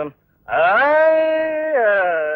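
A man's unaccompanied voice in Carnatic-style classical vocalising. About half a second in he slides up into one long held note and bends down off it near the end.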